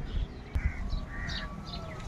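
Crows cawing several times in short calls, over the faint crunch of gritty potting mix of cinder and rice husk being stirred by hand.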